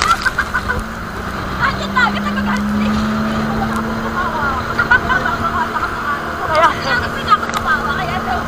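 Steady drone of a motorised outrigger boat's engine running under way through rough sea, with a clutter of short high-pitched squeaks and cries over it.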